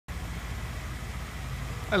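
A vehicle engine idling: a steady low hum, with a man's voice starting at the very end.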